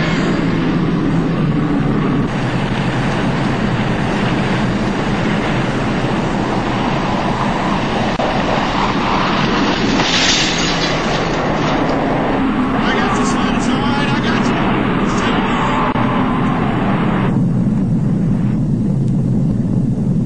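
Film sound effect of a nuclear blast: a loud, continuous rumble and rush of noise with no break, its hiss thinning out near the end.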